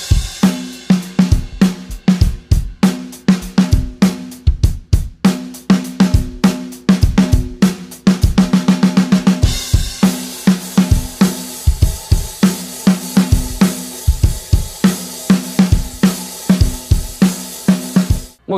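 Acoustic drum kit playing a steady rock groove of kick, snare and hi-hat, with the hi-hat raised high so the crossed hands don't collide. The cymbal wash grows denser about halfway through.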